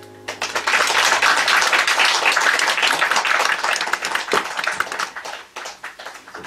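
Small audience applauding, starting just after the song's last note dies away and thinning to scattered claps near the end.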